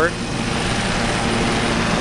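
Steady drone of an aircraft engine running on the airport apron: an even hiss with a low hum under it.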